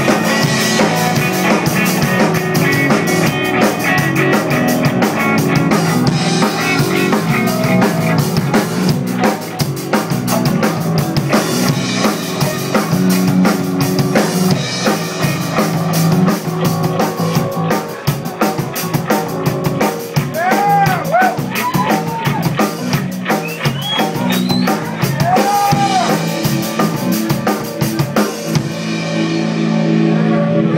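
Live rock band playing, with the drum kit's snare, bass drum and cymbals driving under sustained guitar and bass. Near the end the cymbals and drumming drop out, leaving held chords ringing.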